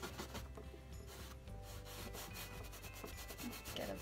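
Paintbrush scrubbing thinned oil paint onto canvas: a faint, scratchy rubbing of quick repeated strokes.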